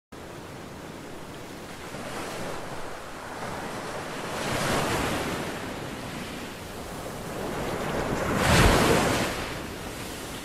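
Rushing noise that swells and fades three times, the third swell the loudest, near the end, like surf washing in.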